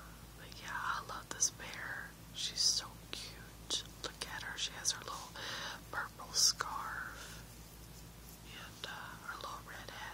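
A person whispering, breathy with sharp hissing s-sounds.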